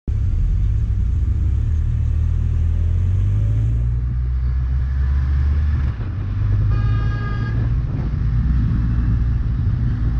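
Motorcycle engine running steadily under way, its note dipping briefly about six seconds in. A short higher-pitched tone sounds about seven seconds in.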